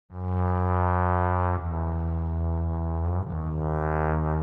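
Several overdubbed trombones holding low, sustained chords, the chord changing twice, at about one and a half seconds and just past three seconds.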